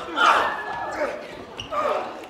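Actors' voices in short wordless shouts and grunts during stage combat, with thuds of feet on the stage floor.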